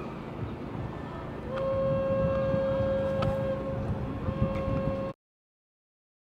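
Outdoor wind and background noise, then about a second and a half in a horn sounds one long steady note. It wavers briefly near the end and cuts off suddenly.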